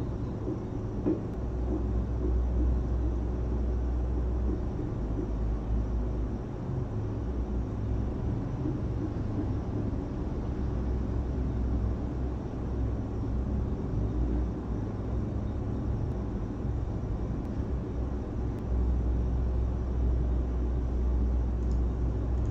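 A steady low rumble that swells for a few seconds near the start and again near the end.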